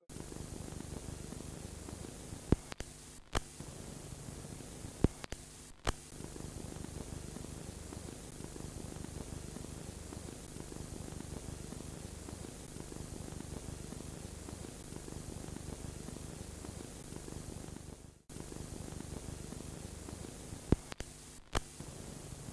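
Steady hiss with a low hum of recording noise, broken by a few sharp clicks in the first six seconds and two more near the end, with a brief dropout about eighteen seconds in.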